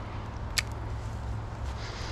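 Steady low rush of river water and wind, with one sharp click about half a second in.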